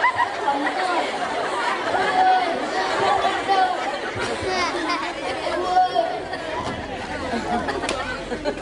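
Many voices talking over one another at once, a steady chatter with no single clear speaker.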